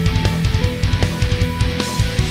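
Heavy metal playback of a live drum kit with rapid, dense bass drum hits under steady pitched notes and cymbals. The drum bus runs through parallel compression at about 30% wet, taking off about six to eight dB, so the sound is mainly the dry drums.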